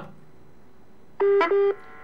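Two short electronic telephone beeps in quick succession, a little over a second in, heard over a quiet phone-in line.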